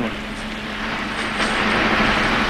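City bus engine and road noise heard from inside the passenger cabin, a steady hum under a noisy rush that grows gradually louder.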